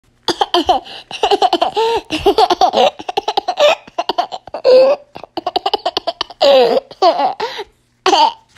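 A young child laughing hard in rapid, high-pitched bursts of giggles and squeals.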